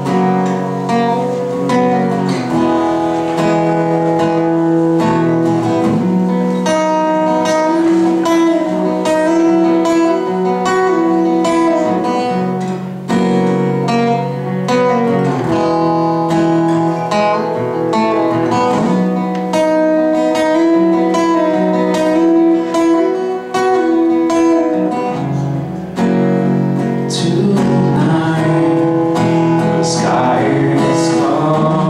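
Acoustic guitar strummed live in a steady rhythm, playing full chords.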